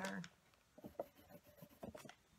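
Faint taps and scratches of a pen tip on a paper art journal page, a few soft ticks about a second in and again near the end.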